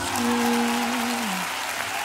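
Studio audience applauding over soft background music with long held notes.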